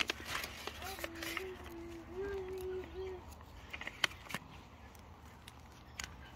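Small plastic zip-lock bag of coriander seeds being handled and opened: scattered soft crinkles and clicks, with a couple of sharper clicks about four seconds in. A faint held voice, like a child humming, runs from about one to three seconds in over a low steady rumble.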